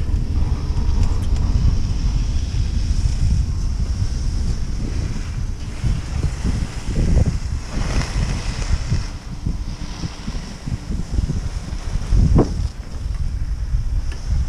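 Wind buffeting the microphone of a camera riding on a double chairlift, a steady low rumble. The noise swells briefly around the middle as the chair passes a lift tower, and a single short knock comes near the end.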